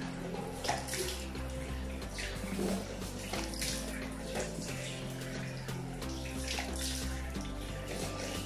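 Water splashing again and again as cupped hands rinse a face over a sink, over steady background music.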